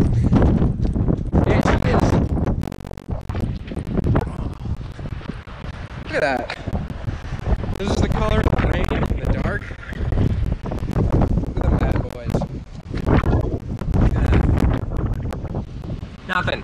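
Wind buffeting the camera microphone in gusts, a heavy rumble that comes and goes, with short bursts of a man's voice.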